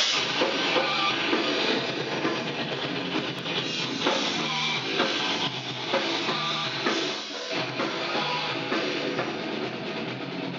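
Metal band playing live: distorted electric guitar over a drum kit, with heavy drum strokes about once a second.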